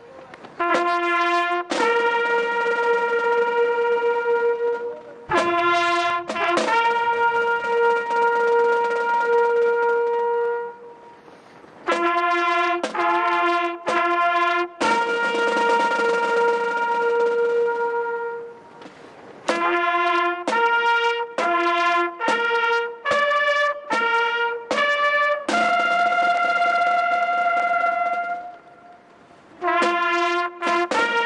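Solo trumpet playing a slow military bugle-style call for the dead, one note at a time on a few fixed pitches. Short pickup notes lead into long held notes, with brief pauses between phrases.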